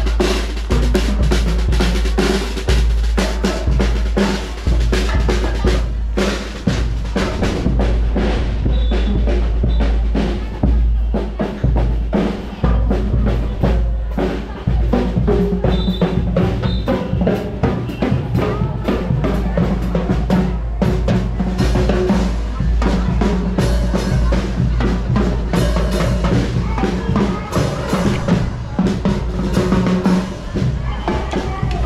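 Marching band drum line playing a cadence: bass drum and snare drums beating a steady, dense marching rhythm with rimshots and rolls.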